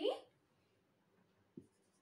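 Dry-erase marker on a whiteboard: a short tap as the tip meets the board late on, then faint, high scratching strokes of writing.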